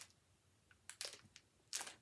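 Near silence at first, then a few faint crackles and clicks of a snack wrapper being handled and opened, with a louder rustle near the end.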